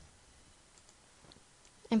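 A few faint computer mouse clicks against quiet room tone, then a voice starts speaking near the end.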